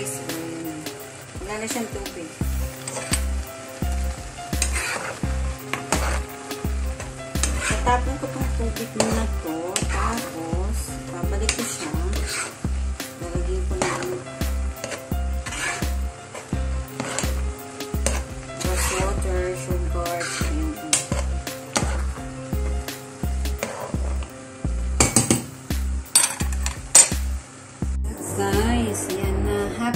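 Vermicelli cooking in a steaming pan on a gas stove, stirred with metal tongs that repeatedly clink and scrape against the pan, with the loudest clatter near the end. Background music with a steady beat plays underneath.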